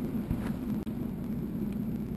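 Steady low rumble with a couple of faint knocks about half a second in, as a wooden loudspeaker cabinet is handled.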